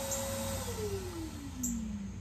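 A machine's whine in the background, holding one pitch at first, then from about half a second in sliding steadily lower in pitch, over a low steady hum.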